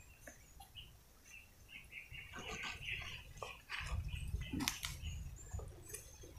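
Faint rustling of leaves and branches with scattered small snaps and knocks, starting about two seconds in. There is a brief low rumble about four seconds in.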